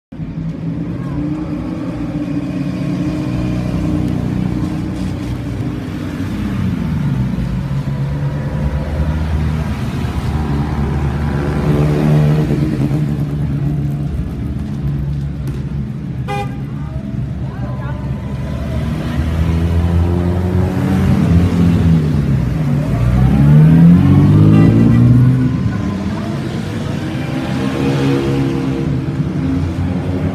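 Engines of 1950s classic sports cars, among them an Alfa Romeo 1900 CSZ Zagato and a Jaguar roadster, running and being revved as they drive slowly past one after another on a wet road. The engine note rises and falls with each blip of the throttle, and is loudest about three-quarters of the way through.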